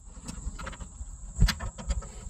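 Welding-machine lead connectors being handled and moved between the front-panel sockets of a Vevor MIG-200D3 welder to change polarity: a few light clicks and knocks, with heavier knocks about one and a half seconds in and near the end.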